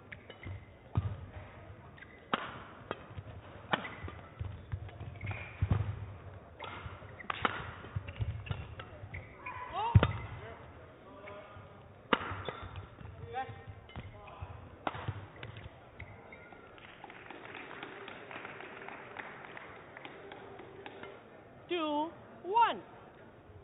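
Badminton rally: the shuttlecock is struck back and forth by rackets with sharp cracks at irregular intervals, the loudest about ten seconds in, with shoes squeaking on the court floor. The hits stop about fifteen seconds in, when the rally ends, leaving quieter hall noise.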